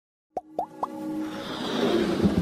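Three quick rising 'bloop' sound effects about a quarter second apart, each a sharp upward sweep in pitch. They are followed by a swelling build-up of electronic intro music.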